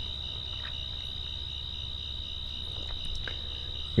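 Crickets trilling steadily at one high pitch, over a faint low hum.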